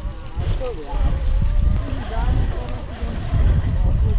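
Wind rumbling on the microphone of a camera on a moving mountain bike, a steady low buffeting, with a brief laugh about a second in.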